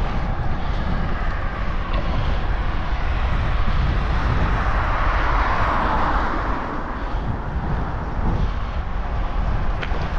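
Gusty wind rumbling on the microphone of a moving bicycle, with a vehicle passing, loudest about five to six seconds in.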